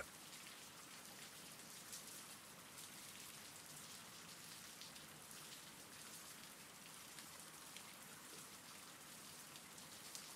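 Faint, steady rain.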